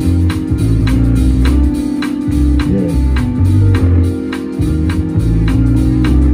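Live band music: organ-toned keyboard chords held over a low bass line, with a steady drum beat of about two hits a second.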